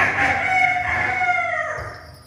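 A rooster-like crow, a cock-a-doodle-doo: one long call that starts suddenly, holds its pitch, then falls away and fades about a second and a half in.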